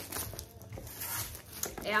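Clear plastic film crinkling and tearing as it is pulled off a cardboard box, with a few sharp crackles.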